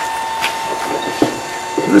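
Electric drive motor of an oar-shaft wind-resistance test rig running steadily, turning a rowing oar slowly on a turntable: a steady high whine over a low mechanical hum, with a couple of faint ticks.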